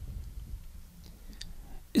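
A pause in a man's speech at a close microphone: faint low room hum with a few small mouth clicks, then his voice starts again at the very end.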